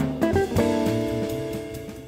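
Jazz guitar trio playing: a few quick guitar notes, then a chord held and ringing for over a second while bass notes move beneath it, with drums.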